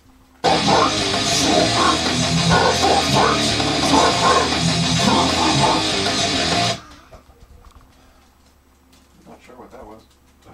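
Heavy metal track played back loudly through studio monitors: guitars and drums with a deep growled vocal. It starts suddenly about half a second in and cuts off sharply after about six seconds.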